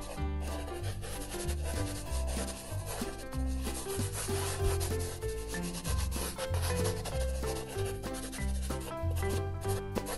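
A paintbrush rubbing in repeated strokes across paper, over background music with a melody and a repeating bass line.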